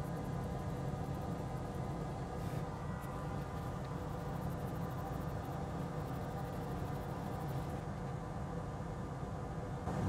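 Steady low machine hum, with a faint short tick about two and a half seconds in.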